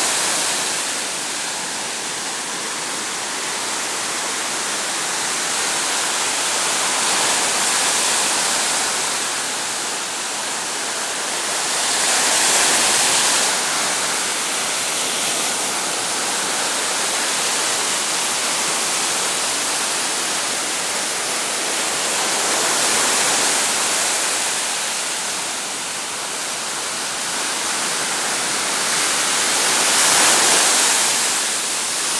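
Ocean surf breaking and washing up a sandy beach: a steady rush of white water that swells each time a wave breaks, every several seconds.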